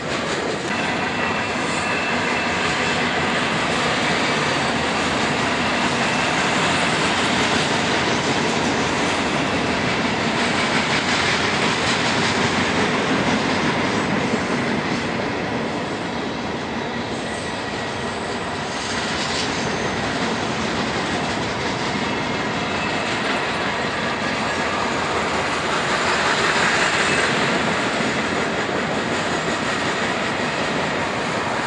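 Freight cars of a manifest train, boxcars and then tank cars, rolling past close by: a loud, steady run of steel wheels on rail, swelling slightly near the end.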